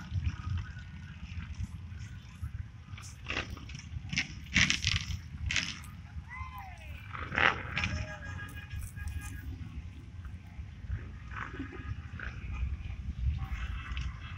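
Roadside outdoor sound: a steady low rumble of wind on the microphone and passing traffic, with scattered short sharp sounds and a few brief gliding calls near the middle.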